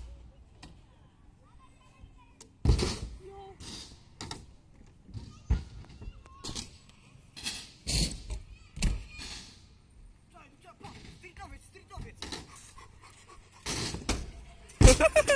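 Stunt scooter knocking and clattering on a skatepark ramp: several sharp separate knocks of the wheels and metal deck hitting the ramp surface and coping, spaced a few seconds apart.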